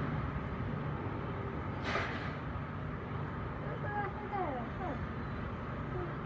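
Outdoor street ambience: a steady low rumble of traffic, with a brief hiss about two seconds in and a few faint, quickly falling chirps near the middle.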